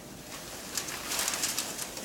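Paper streamers of a Shinto purification wand (haraegushi) swishing and rustling as it is waved, in a run of quick sweeps that grow louder partway in.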